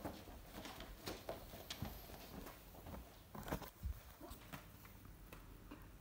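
Faint, soft footsteps on tatami mats, irregular muffled steps with a few slightly louder knocks about three and a half seconds in.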